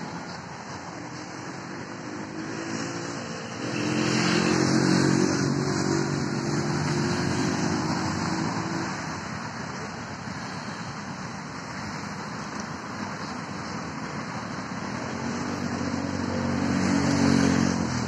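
Motor-vehicle engine sound in road traffic over a steady rushing noise, with an engine running louder twice: from about four seconds in for several seconds, and again near the end.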